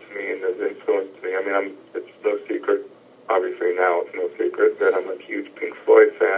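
A man talking over a phone line. The voice sounds thin and telephone-like, with no deep bass and no crisp highs.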